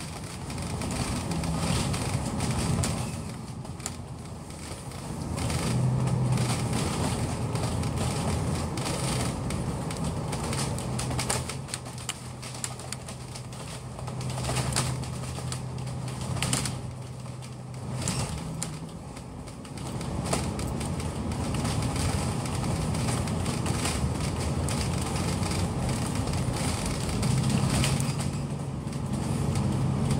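Bus engine running, heard from inside the moving bus, with light rattles and clicks. The low engine hum swells a few seconds in, holds, eases off past the middle and picks up again near the end.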